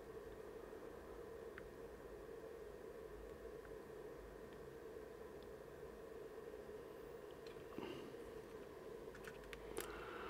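Near silence: faint steady room hum, with a few soft ticks and light handling noise near the end.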